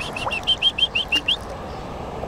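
A bird calling: a quick, even run of short high chirps, about six a second, that stops about a second and a half in.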